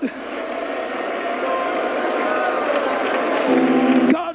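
A congregation praying aloud all at once, many voices overlapping into a steady wash of sound with no single voice standing out. A low held tone comes in near the end.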